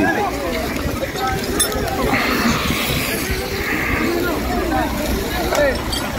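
Many voices of a crowd talking and calling out over one another, with a rougher, hiss-like noise rising for about two seconds in the middle.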